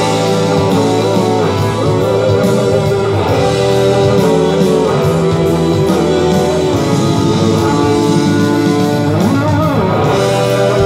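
Fender Stratocaster electric guitar played live through an amplifier: sustained lead notes with vibrato and string bends, with a long upward bend near the end, over held lower notes.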